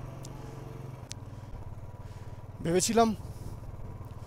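Motorcycle engine running steadily at low road speed, heard from the bike itself, with its pitch shifting slightly about a second in.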